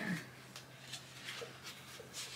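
Soft, faint rustling and crackling of paper as the pages of a paperback activity workbook are opened and leafed through, over a low steady hum.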